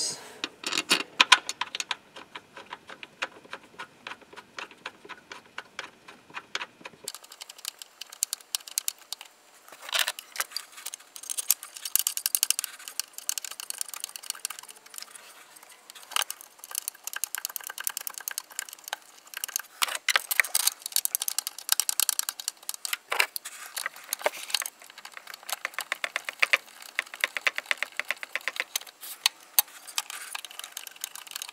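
Small hand ratchet clicking in quick runs, with light metal tool clatter, as the throttle body's mounting bolts are driven in and tightened.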